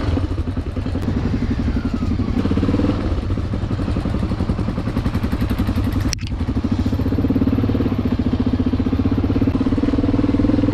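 Enduro motorcycle engine running at low speed on a dirt trail, its pulsing note firming up and holding steady from about six seconds in. A single sharp click comes just before it steadies.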